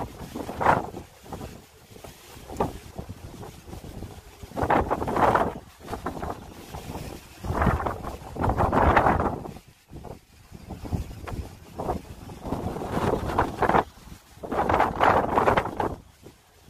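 Strong wind gusting across the microphone: a rushing rumble that swells and dies away every few seconds.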